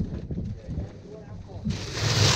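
Indistinct voices talking over a steady low rumble, with a louder hiss rising near the end.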